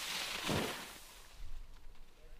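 Sit-ski's ski edge scraping across the snow as the skier skids to a stop at the finish, throwing up spray: a hiss that swells and fades within the first second, with a short low thump about half a second in.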